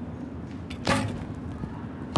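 A recurve bow being shot: a faint click, then a sharp, loud snap of the bowstring at release about a second in.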